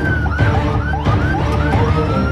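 Ambulance siren wailing, switching to a fast yelp of about three rises and falls a second, then back to a long slow wail near the end. Background music plays underneath.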